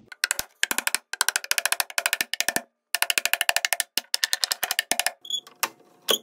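One-handed bar clamp ratcheting as it is slid and tightened across a glued plywood box: runs of rapid, even clicks, about ten a second, in several bursts with short pauses, stopping about five seconds in.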